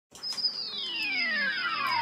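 Electronic tone sliding steadily down in pitch, a long falling sweep that opens the hip-hop track and grows louder as it goes.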